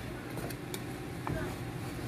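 A few faint clicks of a wooden spatula against a pan of cooked rice as the rice is stirred, over a low steady hum.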